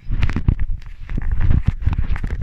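Close handling noise: a quick run of knocks, taps and rubbing, with a heavy low thud, as a small diecast model plane is picked up and the camera is moved by hand.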